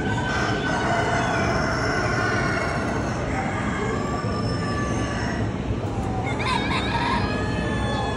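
Roosters crowing in a poultry barn: one long crow about a second in and more calls near the end, over a steady background din.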